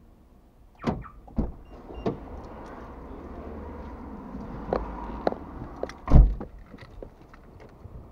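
Heavy tyres being moved and stacked in a tyre shop: several knocks and thuds, the loudest and deepest about six seconds in, over a steady rushing noise, heard from inside a parked car.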